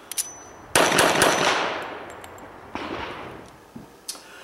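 Two sudden bangs, each fading out in a long ringing tail: a loud one about three-quarters of a second in, and a weaker one about two seconds later.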